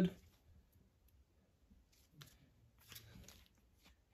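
Faint handling sounds of a plastic phone case being fitted and picked up: a small click about two seconds in, then a brief soft rustle near three seconds, otherwise quiet.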